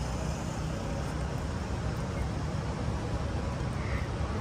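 A truck's diesel engine idling steadily: a low, even hum.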